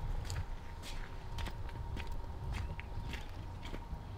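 Footsteps crunching on gravel as a person walks at an even pace.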